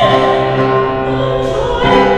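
A female opera singer singing with grand piano accompaniment, holding one long note and moving to a new note near the end.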